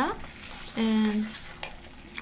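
Oil and apple vinegar foaming and sizzling in a pot as it heats toward the boil, with a wooden spoon stirring it. A short held vocal filler sound about a second in.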